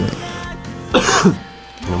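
A short laugh about a second in, over quiet background music.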